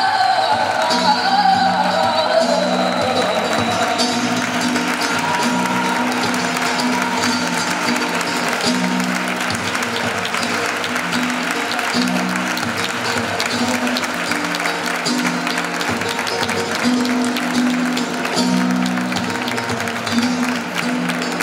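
An audience claps steadily, with many hands, over flamenco music with a singer and guitar. The singing is clearest in the first few seconds.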